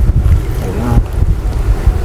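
Wind buffeting the camera's microphone: a loud, uneven low rumble.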